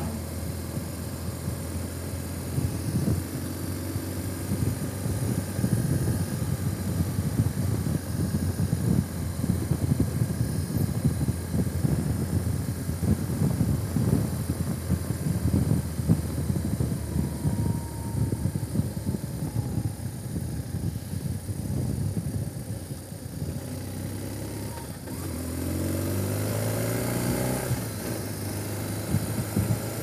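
Vehicle driving: engine and road noise as an uneven low rumble, with the engine note rising about 25 seconds in as it accelerates.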